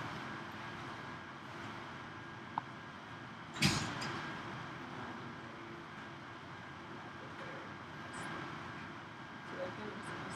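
Quiet lecture-room background with a faint steady hum, broken about three and a half seconds in by one brief thump or rustle, with a tiny click just before it.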